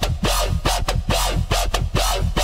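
Dubstep wobble bass preset from the Cymatics Outbreak soundbank, played in the Xfer Serum software synth. A steady deep sub bass sits under a gritty upper layer that pulses about five times a second.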